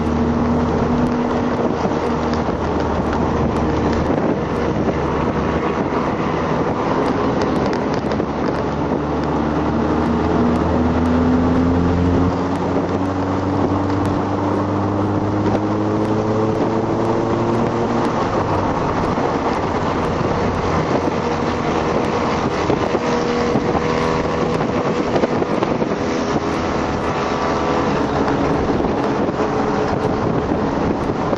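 Audi TT's engine heard from inside the cabin under way on a race track, over steady road and wind noise. Around the middle the engine note climbs steadily for several seconds, then drops at a gear change.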